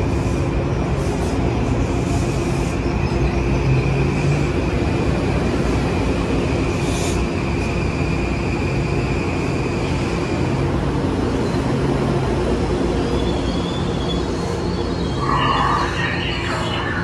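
Kawasaki M8 electric multiple-unit train rolling slowly along the platform as it pulls in: a steady rumble and hum with a high, thin squeal that stops about ten seconds in. A brief louder sound comes near the end.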